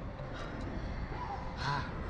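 Wind buffeting the onboard microphone of a Slingshot ride in flight, with a short cry from a rider about one and a half seconds in.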